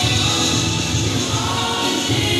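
Music with group singing over a steady beat.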